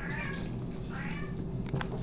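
Two short, faint, high-pitched cries about a second apart, meow-like in shape, with a small click near the end.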